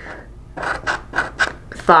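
Scratch-off lottery ticket's coating being scraped away by hand in a quick run of short scraping strokes, starting about half a second in.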